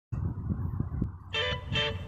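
Kick scooter wheels rumbling as they roll along a concrete ledge, with a few light knocks. About one and a half seconds in, guitar music starts.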